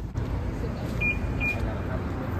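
Two short, high electronic beeps about half a second apart, over a steady low outdoor rumble.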